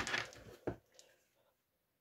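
Faint handling noise as a small battery-powered LED string light is picked up off a counter: a brief rustle at the start, a shorter one a moment later and a small tick about a second in.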